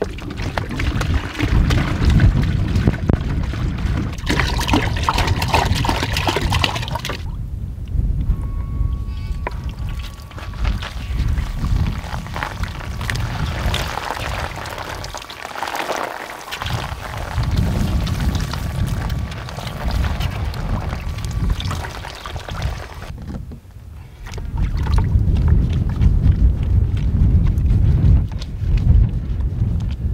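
Water being poured from a plastic jerry can into a bucket, then a hose-fed camp shower spraying water over a person, with wind buffeting the microphone. A thin steady whine runs through the middle.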